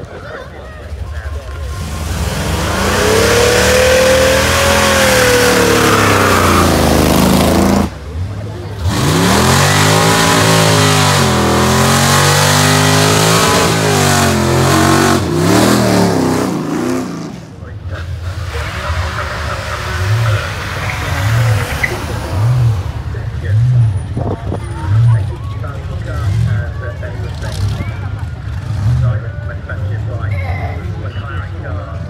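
Chevrolet Camaro's engine revving hard on a launch, its pitch climbing and falling for about fifteen seconds with a brief dip about eight seconds in. It then gives way to a quieter engine idling with a low, regular pulse.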